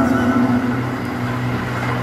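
Live band music: a sustained low chord held between sung lines of a ballad, without singing.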